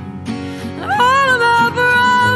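A song with acoustic guitar accompaniment; about a second in, a woman's voice comes in, rising into a long held note.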